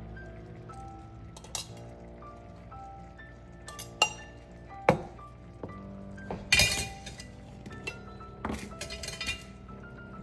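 Metal tongs and stainless steel food jars clinking as noodles are served into the jars: several separate clinks, the loudest clatter about six and a half seconds in, over soft background music.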